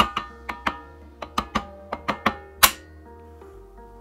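A plastic-faced mallet tapping the brake shoes down onto the backing plate of a motorcycle twin-leading-shoe front drum brake as the shoes and springs are seated. There are about a dozen quick taps, each leaving a metallic ring, and the last and loudest comes a little before the three-second mark. After it the ring fades away.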